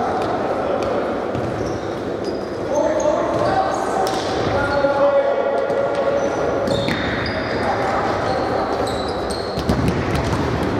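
Indoor futsal play echoing in a large sports hall: the ball being kicked and bouncing on the court floor, shoes squeaking in short high chirps, and players shouting to each other.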